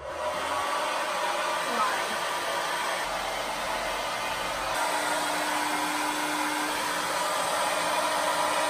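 Handheld hair dryer with a diffuser attachment running steadily, a continuous rush of blown air, with a faint low hum coming in about halfway through.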